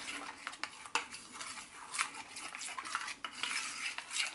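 Metal spoon stirring a thick, wet yoghurt-and-turmeric paste in a small stainless-steel bowl: continuous scraping and squelching, with a couple of sharper clinks of spoon on bowl.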